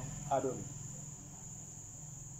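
A short spoken syllable, then a pause in speech filled by a faint, steady high-pitched whine with a low hum beneath it.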